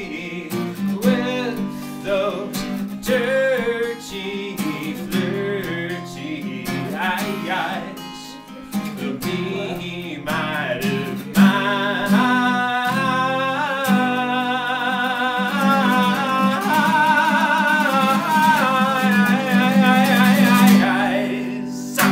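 A man's live solo performance on acoustic guitar. For the first half the guitar plays on its own, picked and strummed; about halfway through his voice comes in, holding long sung notes with vibrato over the strumming. The singing stops just before the end.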